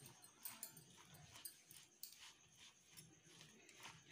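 Near silence, with faint, irregular soft scrapes of a plastic spoon stirring chopped vegetables and chilli powder in a bowl.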